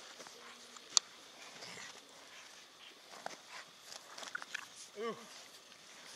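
Dogs playing and scrambling in snow: faint scuffling and footsteps, with one sharp click about a second in.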